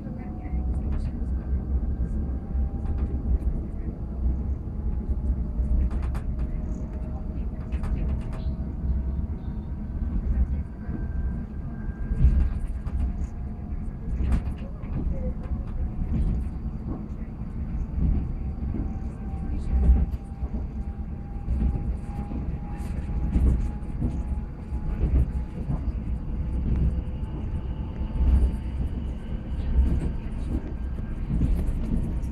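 WKD electric commuter train heard from inside the carriage while running: a steady low rumble of wheels on rail with scattered clicks, and a faint motor whine that slowly rises in pitch.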